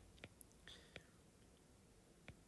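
Near silence, with a few faint clicks of a stylus tapping on a tablet's glass screen as it writes.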